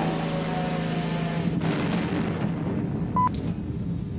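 Explosive blast fired at the face of an iron-ore mine gallery, heard as a sudden dull rumble about one and a half seconds in that dies away over about a second. A steady low hum runs underneath, and a short high beep sounds near the end.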